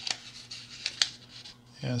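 A loose sheet of paper sliding and crinkling as it is laid and pressed over another printed sheet, with a few sharp paper ticks, the loudest about a second in.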